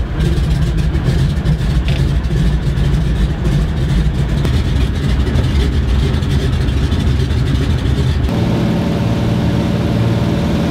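A seaplane's piston engine and propeller running, heard from inside the cabin. About eight seconds in, the rough rumble gives way to a steadier, more even drone.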